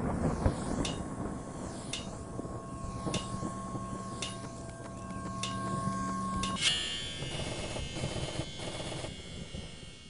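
Logo sting: held droning tones under sharp ticks about once a second. About two-thirds of the way through comes a ringing metallic hammer-on-anvil clang, and the sound fades out at the end.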